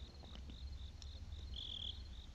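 Faint crickets chirping in an even rhythm, about four chirps a second, with one longer trill near the end, over a steady low hum.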